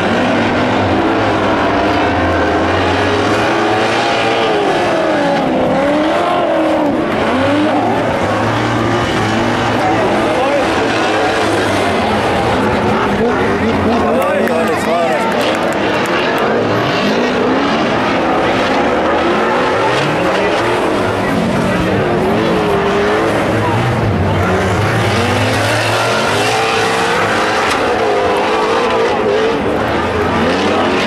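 Several stock-car engines from the over-1800 cc modified class revving hard and rising and falling in pitch, overlapping one another, as the cars race on a dirt track.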